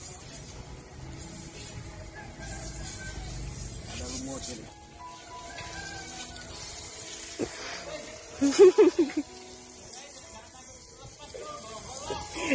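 Garden sprinkler on a PVC standpipe spraying water with a steady hiss, with a short loud burst of voice about eight and a half seconds in.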